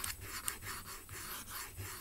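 Fingernails scraping and rubbing on a hard surface close to the microphone in a quick run of short scratchy strokes, several a second.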